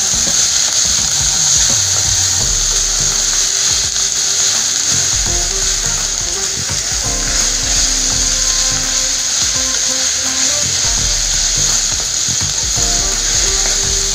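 Chopped vegetables sizzling in a hot non-stick kadai as they are stirred and tossed with a spatula; a steady high hiss with the irregular scrape and knock of the spatula against the pan.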